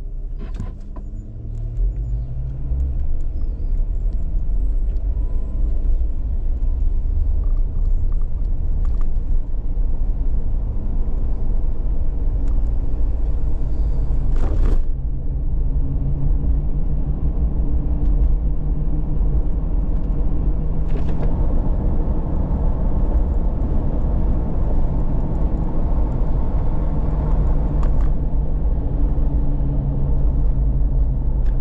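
Car driving: engine and road rumble rise as it pulls away about two seconds in, then run steadily at road speed. A short sharp click comes about halfway.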